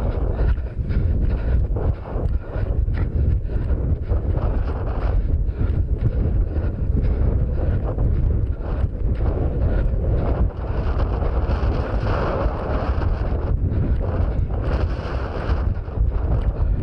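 Wind rumbling steadily on a head-mounted action camera's microphone, with faint knocks from a runner's footfalls and brushing through rough moorland grass.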